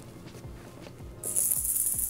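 Soft background music with a faint beat, then about a second and a quarter in a loud, high rattling like a shaker starts abruptly and keeps going.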